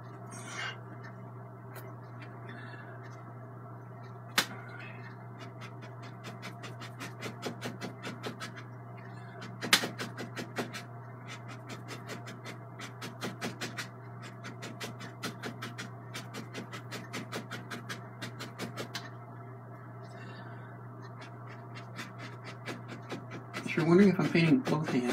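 Oil-paint brush dabbing and tapping on a stretched canvas in quick, even strokes, several a second, with two sharper knocks, over a steady low hum.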